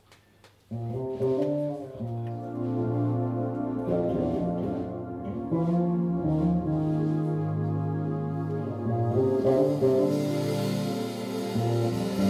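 A live jazz-funk band starts a slow tune about a second in: long sustained chords over held electric-bass notes, with cymbals coming in near the end.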